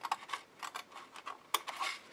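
Scissors snipping through cardstock: a series of short, irregular snips, the loudest about one and a half seconds in.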